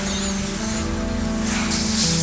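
Background score music with long, sustained held chords.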